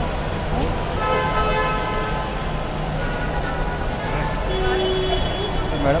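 Busy terminal forecourt noise, with a vehicle horn sounding steadily for about two seconds starting about a second in, then a shorter tone a little before the end.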